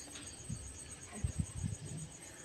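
Spatula stirring chopped onions and chillies in a black pot: faint scraping, with a few soft low knocks in the second half.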